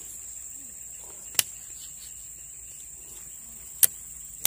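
Steady high-pitched insect chorus, with two short sharp clicks, one about a second and a half in and one near the end.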